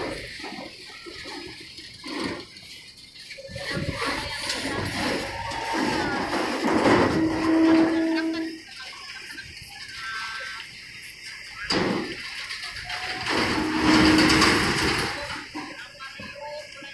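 A car-carrier truck trailer driving onto a ferry's loading ramp amid port noise, with a sharp knock about twelve seconds in. A steady tone is held for a second or so, twice: once near the middle and once near the end.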